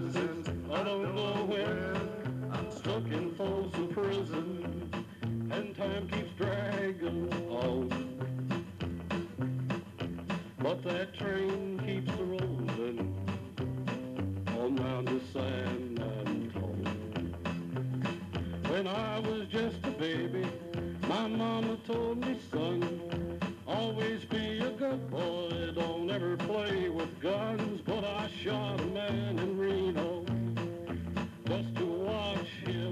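A man singing into a hand-held microphone over an upbeat song with a bass line stepping from note to note, played through a PA system.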